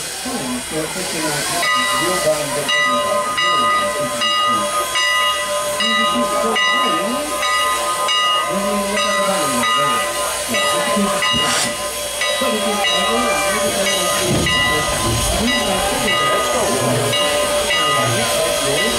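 Canadian National No. 89, a 2-6-0 steam locomotive, standing with steam hissing. A steady high ringing tone sets in about two seconds in and holds unchanged throughout.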